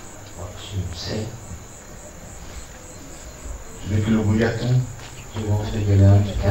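Crickets chirring steadily with a high, fast pulsing trill. About four seconds in, and again near the end, a person's voice comes in with sound but no clear words.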